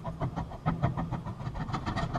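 Cut-down paintbrush stippling thickened silicone rubber onto a plastic bust with short jabbing strokes, making a quick, even run of dabbing taps, about eight a second.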